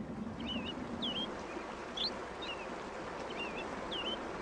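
Stream water running over shallow riffles, with a small bird giving short, quick high chirps several times.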